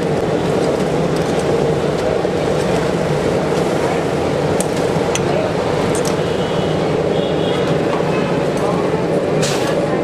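Bread rolls deep-frying in hot oil, a steady noisy sizzle, with metal tongs clicking against a wire fry basket a few times.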